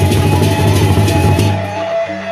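Gendang beleq ensemble playing: the big Sasak barrel drums beaten in a fast, dense rhythm with steady ringing metal tones above, the drumming dropping away near the end.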